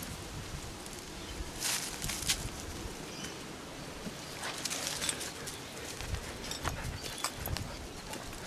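Soft rustling and scattered light crunches in dry gum leaves and pine needles as a husky sniffs and steps through the leaf litter.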